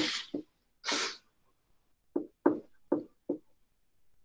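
Dry-erase marker writing on a whiteboard: a couple of brief scratchy strokes early on, then four short taps of the marker against the board about a third of a second apart.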